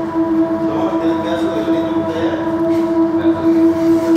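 Background music: a steady, sustained drone of a few held tones, with no beat.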